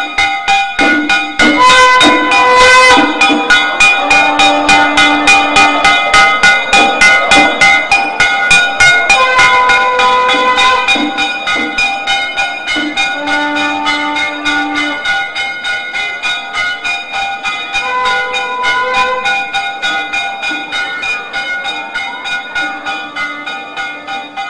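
Temple ritual music: a brass hand gong struck in a fast, even rhythm of about four strokes a second under long held melody notes. It slowly grows quieter in the second half.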